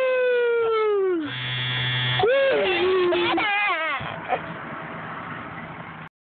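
A long 'woo!' whoop that falls in pitch, then about a second of buzzing, then a child's wavering squeals and vocal sounds during a ride down a plastic tube slide.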